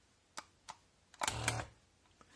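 Foot switches handled with gloved hands: two light clicks, then a short louder rustle and clatter about a second and a quarter in as a plastic foot pedal is picked up.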